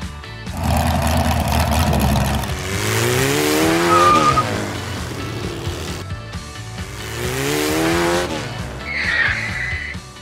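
Car engine revving sound effects, the pitch climbing twice, with short tire screeches, over background music.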